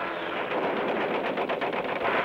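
Rapid machine-gun fire over the steady noise of an aircraft engine during a strafing run on parked planes.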